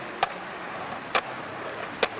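Skateboard wheels rolling on pavement, with two sharp clacks of the board about a second apart.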